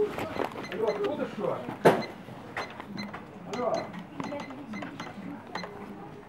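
Knocks and clatter of goods being handled and rung up at a shop checkout counter, with one sharp knock about two seconds in, under indistinct voices.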